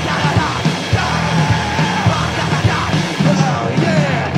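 Live punk rock band playing loud: electric guitar, bass and a drum kit pounding out a steady beat, with yelled vocals over the top.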